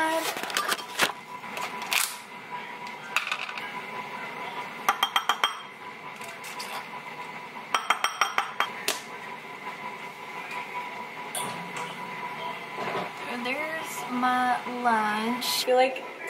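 A table knife clinking against a ceramic bowl as hummus is scraped off it: scattered clicks at first, then two quick runs of light taps, about a third of the way in and again about halfway.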